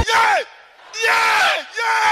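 Voices yelling: three loud shouts of about half a second each, the first falling in pitch.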